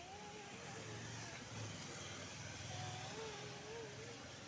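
Faint road-traffic rumble with a vehicle passing, swelling twice, under a faint wavering high tone.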